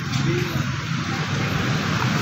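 Jiang Dong ZH1133 single-cylinder diesel engine running steadily after being hand-cranked into life.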